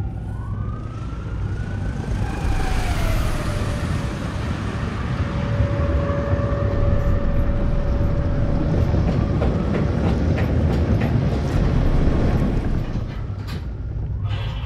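Siren Head's siren call, a distant siren-like wail: a few gliding, rising and falling tones near the start settle into one long held tone in the middle. A heavy low rumble runs under it.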